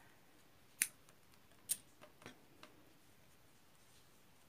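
Scissors snipping through crochet yarn: two sharp snips about a second apart, followed by a few fainter clicks.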